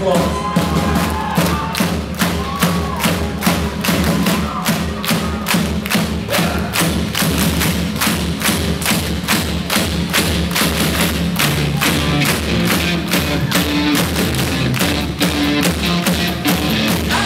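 Live rock band playing on stage, with drums keeping a steady beat of evenly spaced hits under a full band mix.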